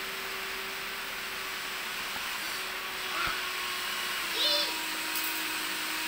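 Small electric motor whirring steadily. Its pitch steps down and back up a few times, with brief high chirps about four and a half seconds in.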